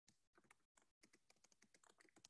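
Very faint computer keyboard typing: soft, irregular key clicks, several a second, with a couple of brief cuts to total silence.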